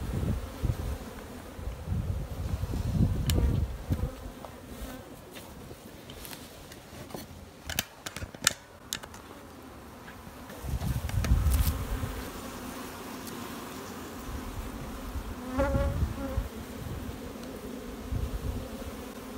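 Honeybees buzzing steadily around open hives, a low hum. Dull low rumbles come and go, and there are a few sharp clicks about halfway through.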